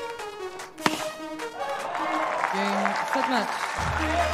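Background music over a tennis match: a single sharp crack of a racket hitting the ball about a second in, then crowd cheering and applause building up as the point ends.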